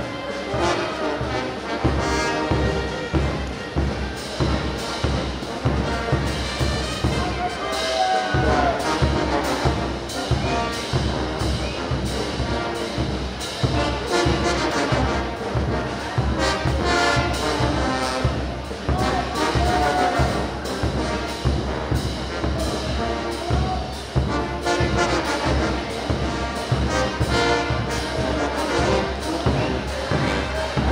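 Brass band music, trumpets and trombones over a steady drum beat, playing for dancing.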